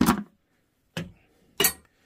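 Three sharp plastic clicks and knocks from a newly fitted toilet seat and its snap-shut hinge bolt covers as they are handled. The first comes right at the start, the next two about a second and half a second apart.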